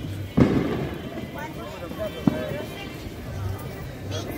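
Fireworks going off: a loud bang about half a second in that rings out for about a second, then a single sharp crack a couple of seconds later.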